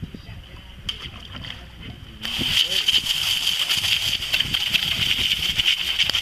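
Hose spraying water onto a fish-cleaning table, starting suddenly about two seconds in and running steadily with splashing.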